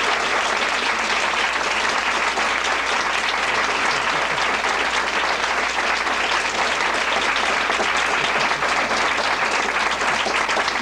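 A small seated audience applauding with steady clapping.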